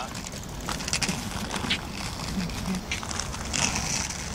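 Inline skate wheels rolling over rough asphalt: a steady gritty rumble with scattered clicks and short scrapes.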